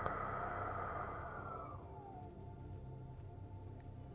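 Calming ambient synth pad holding soft, steady tones. For the first two seconds a louder breathy rushing noise sits on top, fading away with a slight downward glide.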